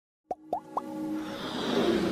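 Intro sting for a logo animation: three quick rising bloops about a quarter second apart, then a music swell that builds steadily.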